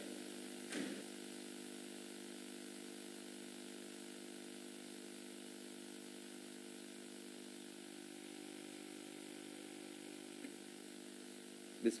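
A faint, steady buzzing hum holding one pitch, with a brief short sound just under a second in.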